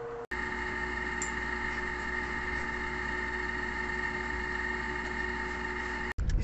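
A steady machine hum with several even, high tones over a low rumble. It starts suddenly just after a brief dropout and cuts off suddenly at the end.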